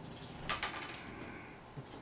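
Faint handling noise from a small plastic Lego model turned in the hands, with a short cluster of light clicks about half a second in.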